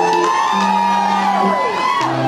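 A hollow-body electric guitar picks held notes of a song's intro, while audience members whoop and whistle over it in rising-and-falling calls.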